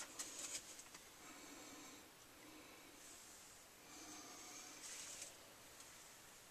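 Near silence: faint breath sounds close to the microphone, swelling and fading every second or two, with a brief rustle about half a second in.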